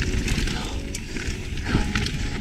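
Mountain bike rolling fast down a dirt trail: steady tyre and wind noise with the bike rattling and a few sharp knocks.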